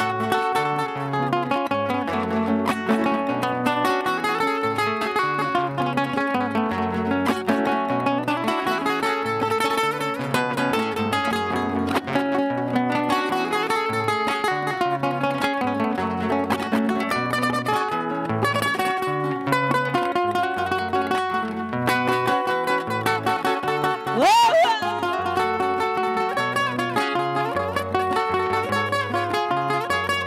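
Two acoustic guitars playing a Panamanian torrente in slow lamento tempo: a picked, ornamented melody over a stepping bass line. A brief loud cry with a sliding pitch cuts in about three-quarters of the way through.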